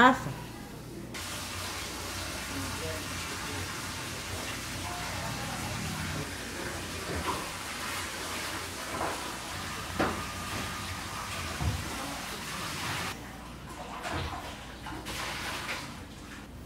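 A steady rushing noise that starts suddenly about a second in and cuts off suddenly near the end. A few soft knocks and faint voices sit underneath it.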